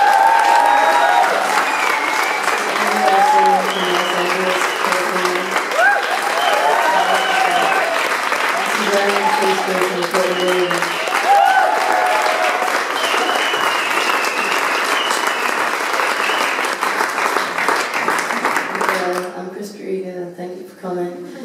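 Concert audience applauding steadily, with voices heard over the clapping; the applause stops near the end.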